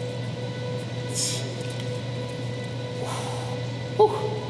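A weightlifter's forceful hissing exhales while straining through heavy barbell bench press reps: two sharp breaths about two seconds apart, over a steady background hum.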